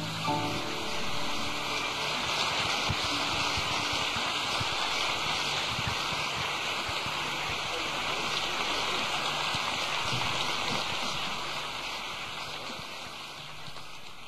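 Audience applauding just after the tango orchestra's last chord dies away, steady and then fading in the last few seconds.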